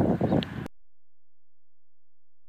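Brief outdoor noise, with wind and rustling on the microphone, that cuts off abruptly well under a second in, followed by complete silence.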